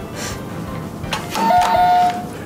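Quick-press quiz buzzer sounding a two-note ding-dong chime, high note then lower note, about one and a half seconds in.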